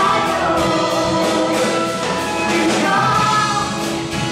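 Live folk-rock song: acoustic guitar strummed in a steady rhythm under several voices singing together.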